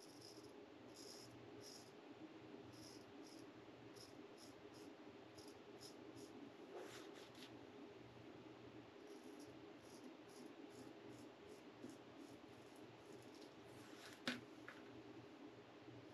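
Feather Artist Club DX shavette with a Proline blade scraping through lathered stubble in many short, faint strokes, coming in quick runs; the blade cuts without drag. A louder click comes about fourteen seconds in.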